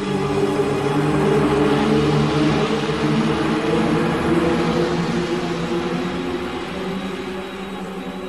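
Radio-play spacecraft lift-off sound effect: engine noise with a steady low drone under it, swelling over the first two seconds and then slowly fading.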